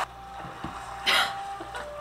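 A woman's short breathy sigh about a second in, over quiet room tone.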